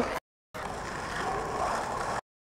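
Steady background hum of distant road traffic. Just before it, a whistled note falls away and the sound cuts out briefly.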